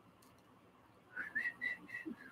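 Soft whistling, a few short notes at about the same pitch, starting about a second in.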